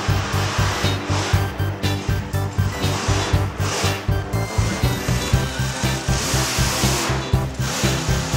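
Background music with a steady, fast bass beat, broken by a few swells of rushing noise.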